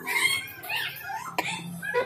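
Animal calls in the background: pitched cries that rise and fall, with one sharp click about two-thirds of the way through.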